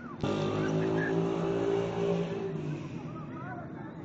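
A motor vehicle's engine running loud and steady close by, starting suddenly just after the start and fading away after about two and a half seconds.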